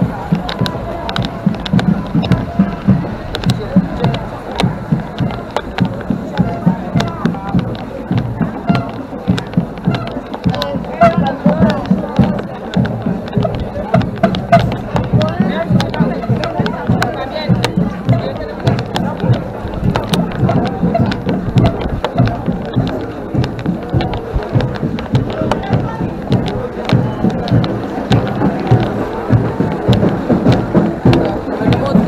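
Carnival parade music with a loud, steady drum beat of about two strokes a second, and voices mixed in.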